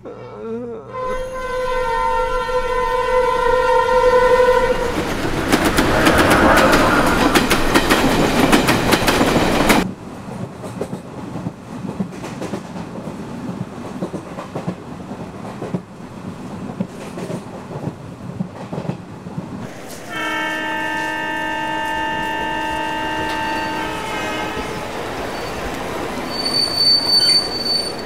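A train horn sounds for about four seconds, then a passing train rushes and clatters loudly until the sound cuts off abruptly about ten seconds in. Quieter rail clatter follows, the horn sounds again for about four seconds around twenty seconds in, and a short high-pitched tone comes near the end.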